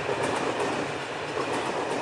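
Passenger train running along the track, heard from the open side of a moving carriage: a steady, even noise of wheels and carriage in motion.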